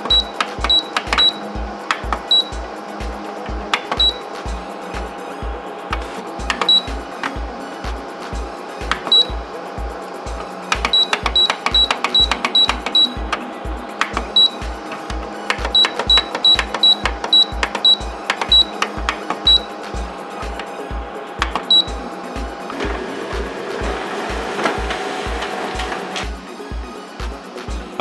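Background music with a steady beat, over many short high beeps from the Canon LBP722Cdw laser printer's control-panel keys as they are pressed, often several in quick succession. Near the end, a few seconds of steady whirring as the printer runs and prints the page.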